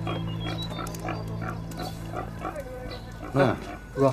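Pigs grunting repeatedly, about three grunts a second, over a steady low music drone that stops about three seconds in. Near the end a man calls out loudly twice.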